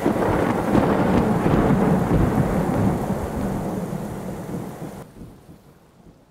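Recorded thunderstorm sound effect, heavy rain with low thunder, played over a stage sound system; it fades from about halfway and dies away near the end.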